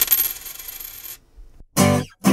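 A coin dropping: quick bounces, then a high ringing that fades away over about a second. Near the end a short pitched sound begins.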